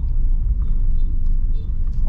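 Steady low rumble of a car driving slowly, engine and road noise heard inside the cabin.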